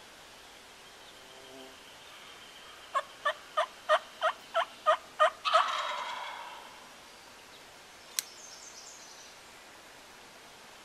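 A run of eight turkey yelps, about three a second, answered at once by a wild turkey gobbler's gobble that cuts in after the last yelp and trails off. A single sharp click comes near the end.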